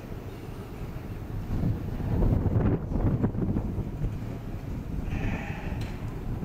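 Wind buffeting the microphone, a rough low rumble that swells about two seconds in, with a few faint knocks around the middle.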